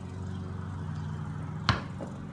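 A basketball bounces once on a concrete driveway, a single sharp thud near the end. A steady low hum runs underneath.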